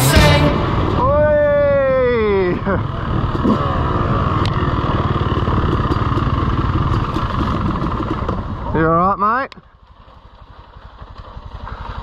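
Motorcycle engine running, its pitch sweeping down about a second in and rising again near the end before the sound cuts off suddenly; fainter, rapid engine pulsing follows and slowly grows louder.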